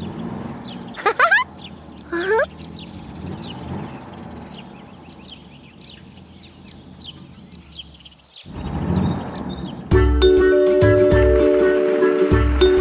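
Cartoon outdoor ambience with birds chirping, broken about one and two seconds in by two short rising vocal exclamations from an animated character. About ten seconds in, a children's song starts with steady bell-like tones over a regular beat.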